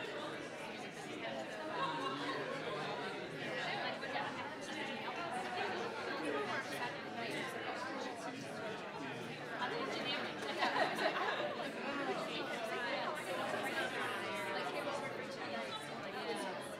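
Many people chatting at once in a large hall, a steady murmur of overlapping conversations with no single voice standing out.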